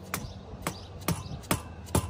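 Rubber mallet driving a landscape edging stake into the ground: five sharp strikes, about two a second.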